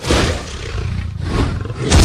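Dragon roar sound effect from an animated intro. It is a loud, rough roar that starts suddenly and surges louder near the end.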